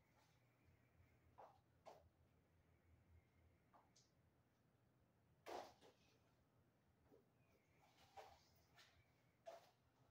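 Near silence: room tone with a low hum and a few faint, scattered clicks and knocks from a person handling electrical cable, the loudest about five and a half seconds in.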